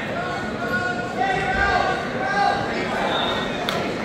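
Indistinct voices of people talking in a large gym, with one sharp knock near the end.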